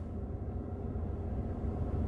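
Steady low rumble inside a car cabin.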